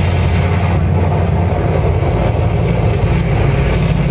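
Death metal band playing live: a steady, bass-heavy wall of distorted bass guitar, electric guitars and drums, recorded loud and muddy.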